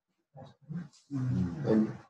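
A man's voice speaking: two short words, then a longer phrase.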